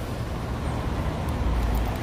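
Street traffic noise: a steady mix of passing cars, with a low rumble growing near the end.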